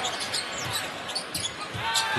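A basketball being dribbled on a hardwood court, with arena crowd noise behind it and a few short high squeaks.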